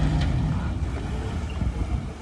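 Low rumble of a motor yacht's engines running at manoeuvring speed, with wind on the microphone; a steady low hum fades out about half a second in.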